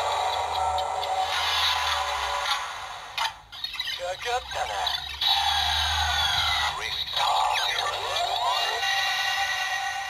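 Bandai DX Gashacon Bugvisor II toy (Shin Dan Kuroto version) playing its Pause sequence through its small built-in speaker, set off by pressing the A and B buttons together: electronic sound effects and music with recorded voice, in the voice of Dan Kuroto. It runs with two brief dips and fades out at the end.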